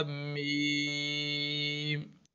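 A man's voice reciting Arabic letters in a drawn-out, chant-like way, holding one low pitch steadily, with a hummed nasal stretch about half a second in.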